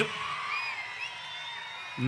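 A large rally crowd cheering at a distance, with a few high whistles that rise and fall.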